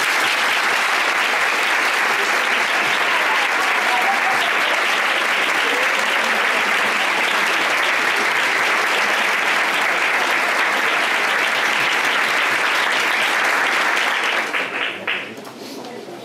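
An audience applauding: steady, dense clapping that dies away over the last couple of seconds.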